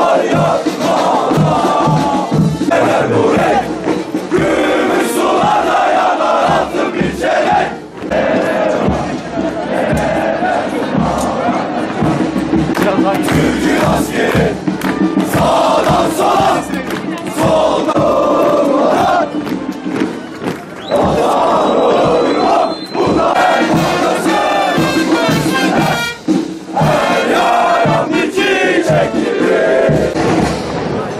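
A large body of soldiers' male voices chanting loudly in unison as they march, in phrases a few seconds long with short breaks between them.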